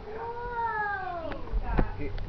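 A long, high, voice-like 'ooh' that slides down in pitch for over a second. It is followed by two sharp knocks near the end, the second the loudest.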